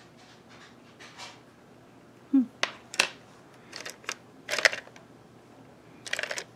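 Quiet room tone. About two seconds in comes a short murmured 'hmm', then about five sharp clicks and taps over the next two seconds from a makeup brush and a compact eyeshadow palette being handled.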